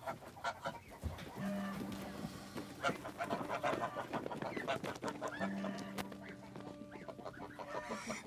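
A flock of domestic white geese calling with short honks and cackles, over scattered clicks and rustling.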